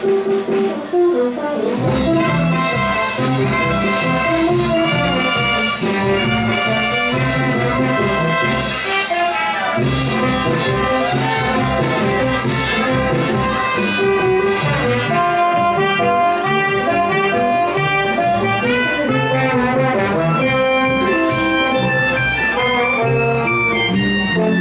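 Brass band playing marinera norteña music, trumpets and trombones over a steady drum beat; the drums come in about two seconds in and drop out for a moment near the middle.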